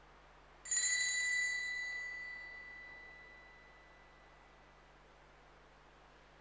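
A small altar bell struck once, ringing clearly and dying away over about three seconds, during the silent Canon of the Mass.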